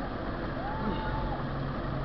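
Steady wind and road noise on a handlebar-mounted camera riding among a crowd of cyclists, with a low vehicle hum and riders' voices. A brief high call rises and falls about halfway through.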